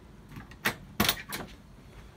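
Car door latch and hinge clicking and knocking: four or five sharp clicks, the loudest about a second in.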